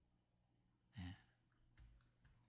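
Near silence in a pause between sentences, broken about a second in by one brief, soft breathy vocal sound from the man, like a short sigh.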